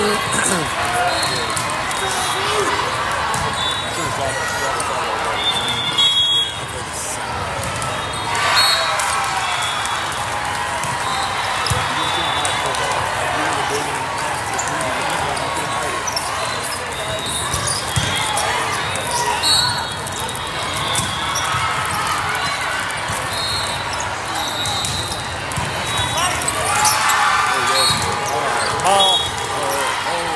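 Echoing din of a large indoor volleyball hall: steady chatter of spectators and players, with volleyballs being struck and bouncing several times and short high squeaks scattered throughout.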